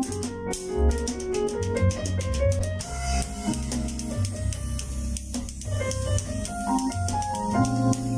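Drum kit with perforated low-volume cymbals played along to a smooth jazz backing track in C minor at 70 bpm, with drum and cymbal strokes over keyboard chords and a bass line. A steady cymbal wash sets in about three seconds in.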